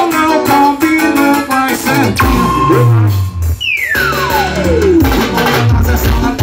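Live band music, an instrumental passage led by an electronic keyboard over a bass line and beat, with no vocal. About three and a half seconds in, a long falling pitch sweep slides down from high to low over about two seconds.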